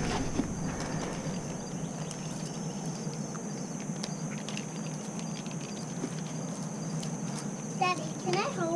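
Outdoor ambience: a steady high-pitched drone, with scattered light clicks and knocks.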